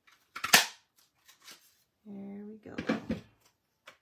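Stampin' Up! Country Bouquet handheld paper punch snapping through paper to cut out leaf shapes, a sharp clack about half a second in and another about three seconds in. A short hummed voice sound comes just before the second clack.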